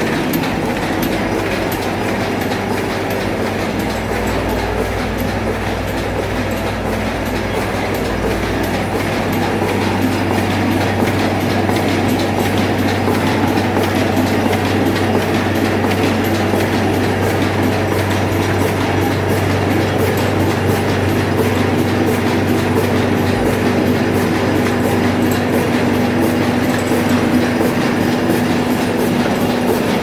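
Solna sheet-fed offset printing press running while printing: a loud, continuous mechanical clatter with a fast, even ticking over a steady motor hum. A steady mid-pitched tone joins in about two-thirds of the way through.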